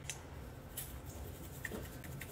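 Faint scattered ticks and light rustling from a spice jar being shaken and tapped to sprinkle smoked paprika.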